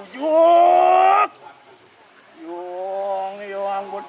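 Loud, drawn-out roaring cry of the masked Rangda performer in a Balinese Calonarang drama, rising in pitch for about a second. After a pause comes a second, quieter cry held at a steady pitch.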